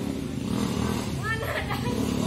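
People's voices over a steady low rumble, with a short burst of talking or calling in the second half.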